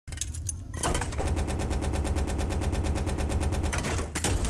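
A fast, even rattle of about ten beats a second, lasting nearly three seconds, over a steady deep bass, played through a concert sound system.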